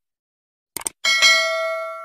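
Subscribe-button animation sound effect: two quick mouse clicks, then a bright notification bell chime of several tones that starts about a second in and fades away.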